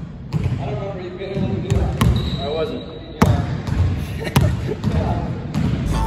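A basketball bouncing on a gym's hardwood floor, several sharp bounces about a second apart, echoing in the large hall, with voices in the background.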